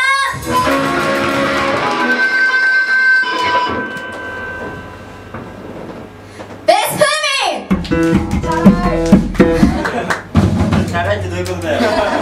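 Electric guitar played solo through an amplifier: sustained notes ring out and die away over the first few seconds, then after a short lull more playing starts, with a few drum hits.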